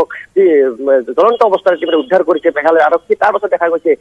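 Only speech: a person talking steadily in a thin, narrow voice like one heard over a phone line.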